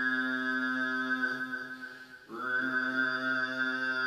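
Overtone singing (L-technique, double cavity): a man holds a steady low drone on C3 while a whistle-like overtone rings out above it, around the 12th harmonic, as he works down the harmonic series one harmonic at a time. A little past halfway the voice fades and breaks off briefly, then comes back in on the same drone and overtone.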